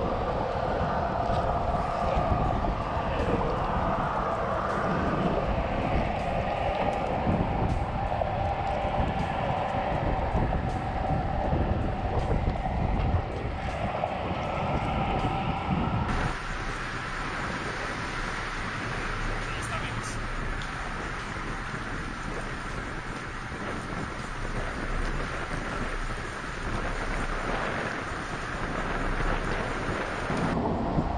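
Wind buffeting the microphone over a steady rumble of traffic on a bridge close by. About halfway through the sound changes and drops a little in level.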